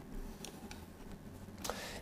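Faint room tone in a pause in speech, with a few soft ticks.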